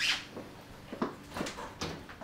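Footsteps on a hard kitchen floor: a few short knocks about half a second apart, after a brief rustle at the start.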